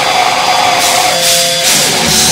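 Hardcore band playing live and loud: distorted electric guitars ringing out over a wash of cymbals.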